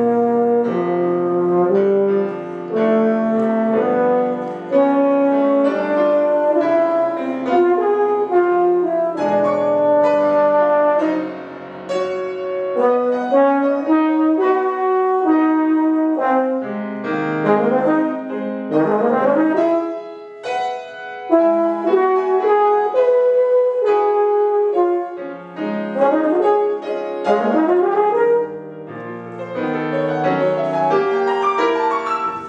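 Euphonium playing a classical melody of sustained notes and quick runs, accompanied by piano. Near the end the euphonium stops and the piano continues alone.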